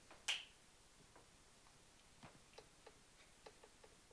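Near silence: quiet room tone with one sharp click about a third of a second in, then a scattering of faint, irregular small clicks.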